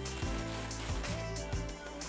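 A clear plastic bag crinkling and rustling as a camera body is unwrapped from it, with quiet background music underneath.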